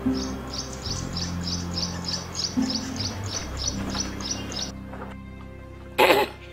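A small bird chirping in an even, rapid series, about three chirps a second, over background music with steady low sustained tones. The chirping stops abruptly near the end.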